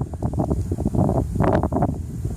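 Wind buffeting the microphone: a loud, uneven low rumble broken by many short irregular crackles and bumps.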